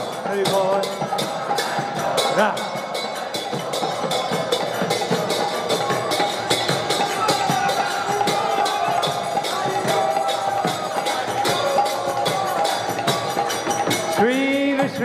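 Kirtan music: group singing with hand cymbals struck in a quick, even beat, along with drumming.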